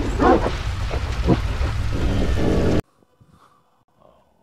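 A loud, distorted, animal-like vocal effect over a heavy low rumble, cutting off suddenly a little under three seconds in, followed by near silence.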